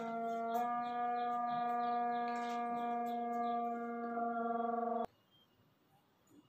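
A long, steady horn-like tone with a small step in pitch about half a second in, cutting off suddenly about five seconds in.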